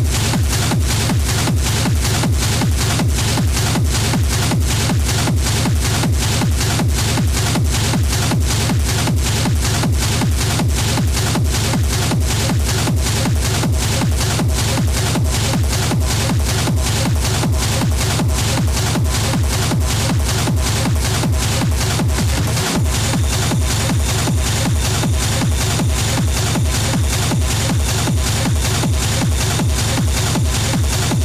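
Schranz-style hard techno from a live DJ set: a steady, evenly spaced kick drum under dense percussion. About two-thirds of the way in, a high steady tone enters over the beat.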